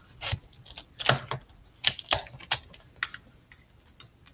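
Irregular clicks, taps and short scratchy rustles of a shipping box of records being opened by hand, as its packing is worked loose.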